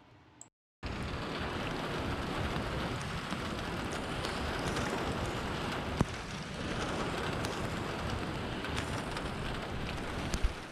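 Steady rain falling, starting about a second in after a brief silence, with scattered sharp taps of drops and one louder tap about six seconds in.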